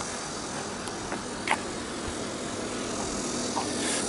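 A car approaching along the road, its engine and tyre noise slowly growing louder, with one short click about one and a half seconds in.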